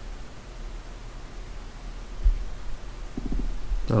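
Low steady hum and room noise on a microphone, with one soft low thump a little past halfway.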